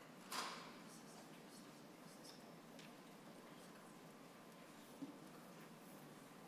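Near silence: the room tone of a hearing room picked up by open microphones, with one brief sharp noise just after the start and a faint click about five seconds in.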